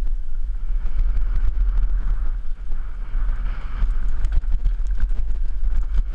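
Wind buffeting a helmet-mounted camera's microphone on a fast downhill mountain-bike descent: a steady heavy rumble. Scattered clicks and rattles of the bike and its tyres running over the rough dirt trail sound through it.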